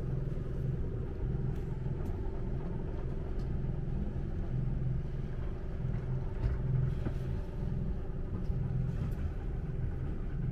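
A sailing yacht's inboard diesel engine running steadily as the boat motors under engine: a constant low rumble with a steady hum over it.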